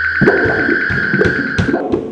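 Live electric guitar and drums playing: a steady high guitar note held over loose, irregular drum hits, the note cutting off near the end.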